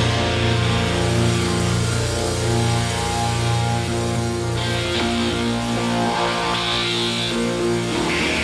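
A rock band playing live, led by electric guitars holding long, ringing chords over a steady low note. The low note changes about five and a half seconds in.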